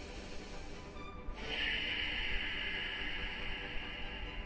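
Ujjayi breathing: a long, steady hissing breath drawn through a narrowed throat, starting about a second and a half in and lasting nearly three seconds.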